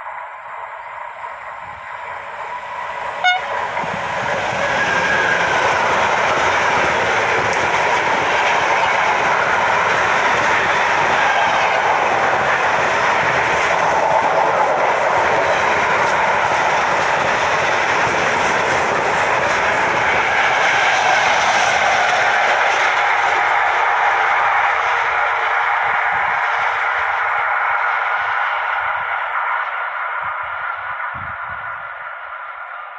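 Freight train hauled by a Bombardier Traxx F140 DC electric locomotive, with intermodal swap-body wagons, passing close by. The rush of wheels on the rails builds over the first few seconds, stays loud and steady as the wagons go by, then eases off near the end. A single sharp crack comes about three seconds in.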